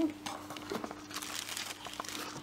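Light crinkling and small clicks as a plastic water bottle and the camera are handled, over a faint steady hum.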